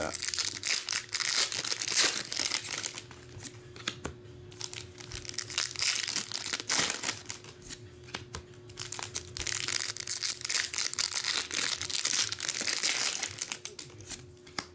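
Foil Pokémon booster pack wrappers crinkling as they are torn open and handled, with trading cards flicked and slid through by hand. The crackling comes in spells: at the start, briefly in the middle, and again through the last few seconds.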